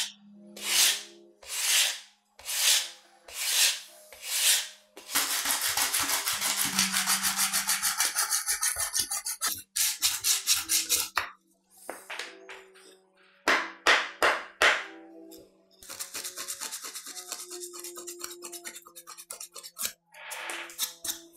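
Sandpaper rubbing by hand on an old wooden knife handle. It starts as separate slow strokes about one a second, then turns into fast back-and-forth scrubbing; there are a few more single strokes and another fast run near the end.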